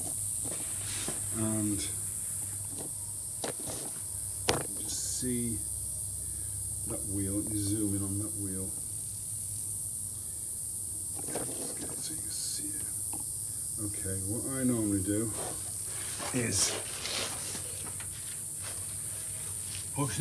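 A man's voice at intervals, too indistinct to be transcribed, over a steady high hiss, with a few sharp clicks or knocks, the loudest about four and a half seconds in.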